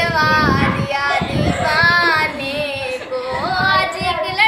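A girl's solo singing voice singing a Hindi song, holding long notes that bend up and down in pitch.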